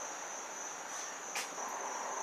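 A faint, steady high-pitched tone, like a cricket's trill or an electrical whine, with one light click about one and a half seconds in.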